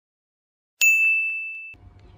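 A single bright ding, a chime-like sound effect, struck about a second in and ringing down for about a second before it cuts off.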